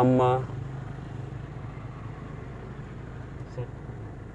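Steady low hum inside the cabin of a stationary Mahindra XUV500: its 2.2-litre engine idling.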